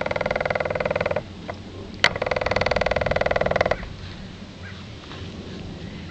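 An animal's call: two loud, fast-pulsing buzzy trills, the first lasting about a second and the second about a second and a half, with a sharp click just before the second.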